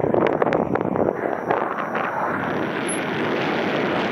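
Airflow rushing over the camera microphone of a paraglider in flight, a loud steady wind noise. A few sharp ticks come in the first second.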